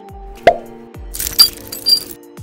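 Upbeat intro music with a steady beat, with three sharp pop-click sound effects: a subscribe-button click animation. The first and second pops are the loudest.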